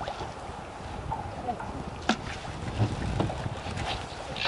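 Wind buffeting the microphone on an open boat deck, an uneven low rumble, with one sharp click about halfway through.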